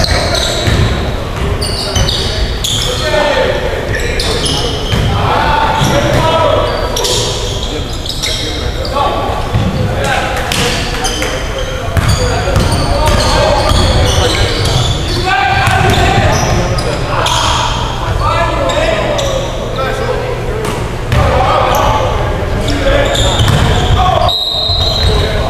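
A basketball being dribbled and bounced on a hardwood gym floor during a game, with players' voices calling out, all echoing in a large gym.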